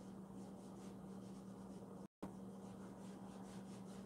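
Round applicator pad rubbing cream conditioner into an eel-skin wallet: faint, soft repeated swishing strokes, over a steady low hum. The audio cuts out for an instant about two seconds in.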